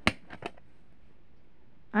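A sharp plastic click as a DVD is pushed off the centre hub of its plastic keep case, followed by a couple of faint handling clicks.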